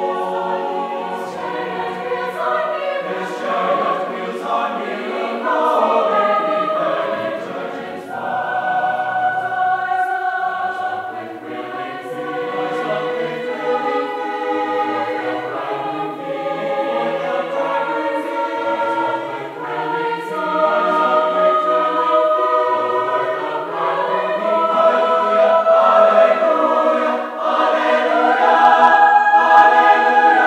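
Mixed college choir of men's and women's voices singing in harmony, in phrases with short breaks between them and growing louder toward the end.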